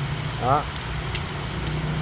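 Aluminium electrolytic capacitors clicking lightly against each other in the hand, three small sharp clicks about half a second apart, over a steady low machine hum.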